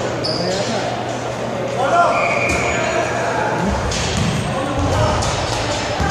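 A basketball bouncing on a hardwood gym floor among the voices of players and onlookers, echoing in a large hall.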